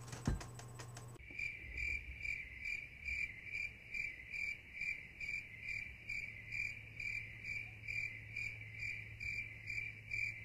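Cricket chirping sound effect: an even series of high chirps, about two a second, that starts suddenly about a second in, the stock 'awkward silence' crickets. A single soft knock comes just before it.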